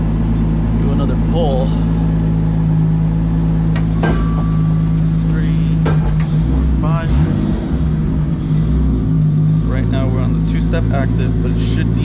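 Turbocharged 2JZ inline-six in a 350Z drift car idling steadily; a little past the middle the idle note wavers and dips for a few seconds before settling again.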